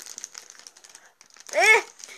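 Faint crinkling and rustling with small scattered clicks, then a child's voice gives one short sound with a rising and falling pitch about one and a half seconds in.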